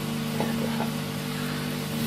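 A steady low hum with an even hiss behind it, unchanging throughout.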